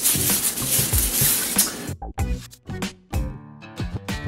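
A hand in a plastic bag rubbing oil into a wooden cutting board's surface in a circular motion, a steady scrubbing hiss that cuts off suddenly about halfway through. After that comes music in short, broken snatches.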